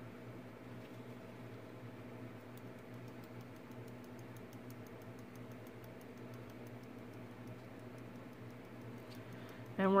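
Faint quick light ticking, several ticks a second, as clear embossing powder is shaken from a small jar onto inked foil paper in a plastic powder tray, over a low steady hum.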